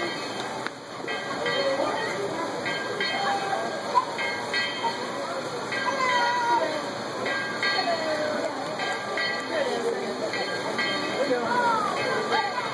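The Dollywood Express, a coal-fired narrow-gauge steam train, running steadily, heard under people's voices and chatter.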